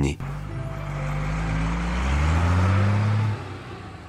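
Delivery truck engine running and rising steadily in pitch as it speeds up, then cutting off sharply a little after three seconds in.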